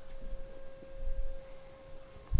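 A steady mid-pitched hum, one held tone with fainter overtones, under quiet room noise.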